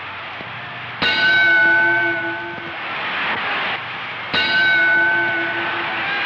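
Boxing ring bell struck twice, about three seconds apart, each ring fading slowly with a wavering hum, marking the change from round one to round two.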